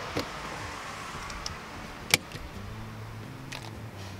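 Plastic clicks as an electrical plug is pushed into a GFCI outlet and a DeWalt battery charger is handled: a small click at the start and a sharp, louder click about two seconds in. A low steady hum comes in during the second half.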